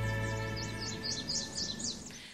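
Music of a TV show's ident jingle: held chords fading out. Bird-like chirps sound over it in the second half, about six in a row.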